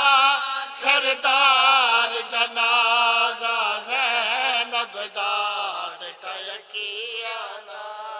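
A group of men chanting a noha, a Shia lament for Imam Husayn, in unison into a microphone, with long wavering notes. The chanting grows softer in the second half.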